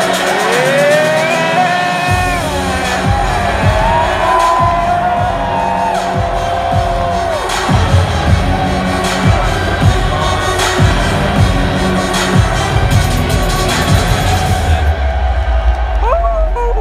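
Loud entrance music played over an arena sound system. A sliding melodic line runs over the first several seconds, and a heavy bass beat with regular drum hits comes in about two seconds in.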